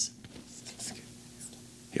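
Teenage quiz contestants whispering to each other as they confer on an answer, with a soft 'yes, yeah'.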